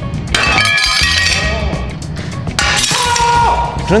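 Two panes of glass struck with a hammer and shattering, an ordinary pane and a tempered pane, over background music. There are two sudden crashes, the first about a third of a second in with ringing, the second about two and a half seconds in with a dense spray of breaking glass.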